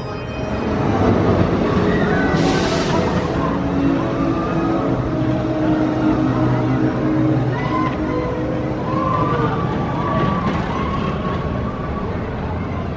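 Steel roller coaster train running along its track, a steady rumble with a whine that rises and falls, heard over a background murmur of voices.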